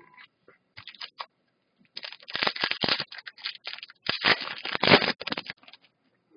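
Foil wrapper of an O-Pee-Chee Platinum hockey card pack being torn open and crinkled by hand, in two crackling bouts about two and four seconds in, with a few small rustles before.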